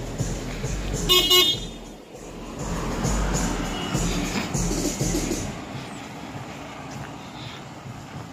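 A vehicle horn toots once, briefly, about a second in, over the steady noise of street traffic.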